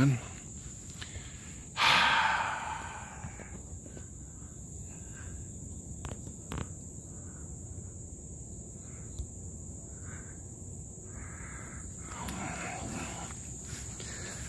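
Steady high-pitched drone of crickets. About two seconds in there is a loud breathy exhale close to the microphone, and faint rustling footsteps through tall undergrowth come and go through the middle.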